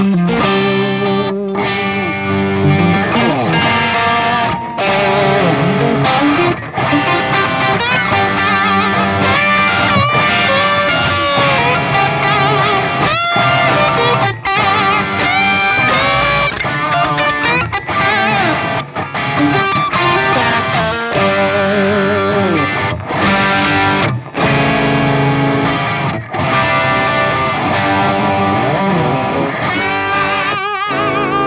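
Two solid-body electric guitars, one of them a 2014 Gibson Les Paul Melody Maker, played together through amplifiers in an improvised jam. Lead lines with string bends and vibrato weave over a continuous accompanying part.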